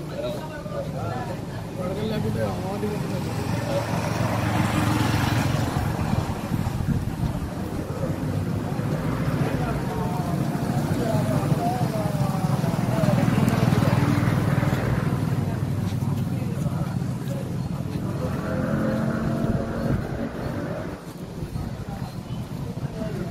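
Roadside sound: men's voices talking indistinctly over traffic, with passing vehicles swelling up about five seconds in and again around thirteen seconds.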